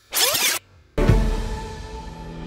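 A half-second scratching sound effect, then music comes in with a loud hit about a second in and keeps playing.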